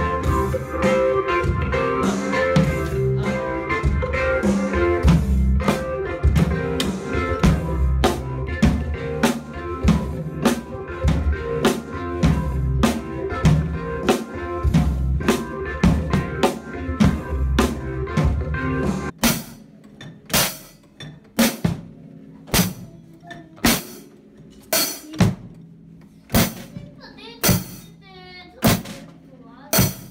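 Drum kit played along with a backing music track until about two-thirds through, when the music cuts off suddenly. After that, single drum strokes about once a second, with a brief voice near the end.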